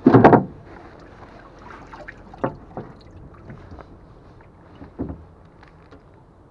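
Water splashing in a fish holding tank as muskies are handled, with one loud splash at the start and a few smaller ones later over a steady low background.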